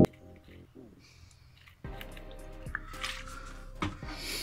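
Faint handling noises of a plastic bottle of acetone being squeezed onto a foam sponge and set down, with a few small clicks. A low steady hum starts abruptly about halfway through.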